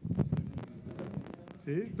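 Irregular low, muffled thumps and knocks from a handheld phone being moved and handled, with a man's voice starting near the end.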